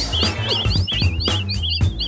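Short music sting with a steady low beat, overlaid by a run of quick, high bird-like tweets, about five a second, as a tweeting sound effect.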